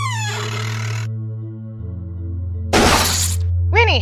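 Low droning film score under sound effects: a descending creak as a bedroom door swings open at the start, then a sudden loud crash about three seconds in, followed by a woman's short startled cry just before the end.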